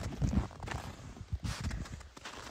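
Footsteps in snow: several boot steps up a snowy slope, coming as short, uneven thuds.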